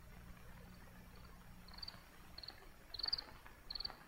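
Crickets chirping: a string of short, high chirps about every half second, faint at first and growing louder near the end.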